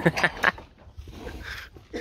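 A man's voice briefly in the first half-second, then faint voices and low background noise.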